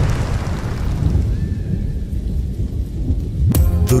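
A rumbling thunder sound effect with a rain-like hiss, fading away over about three seconds. About three and a half seconds in, music starts suddenly.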